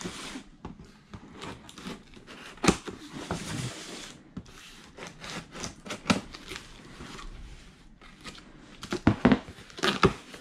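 Scissors cutting packing tape on a cardboard box, and the box being handled and its flaps pulled open: rubbing, scraping and tearing sounds with a few sharp clicks.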